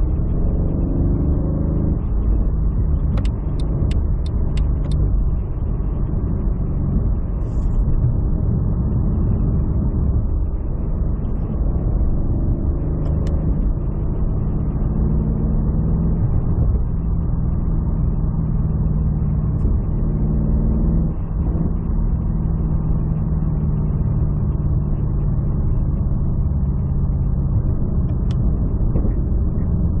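Mercedes-AMG CLS63 S (W218) with its 5.5-litre twin-turbo V8, remapped to about 710 hp, heard from inside the cabin at moderate speed on part throttle: a steady low engine drone with road noise, its pitch stepping a few times as it shifts between third and fourth gear.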